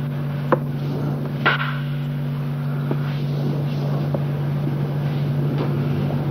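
Steady low electrical hum and hiss from an old black-and-white film soundtrack, with two brief sharp knocks about half a second and a second and a half in.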